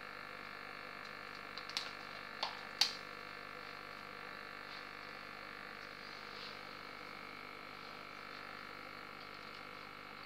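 Aquarium filter running with a steady hum and bubbling at the water surface, with a few sharp clicks about two to three seconds in.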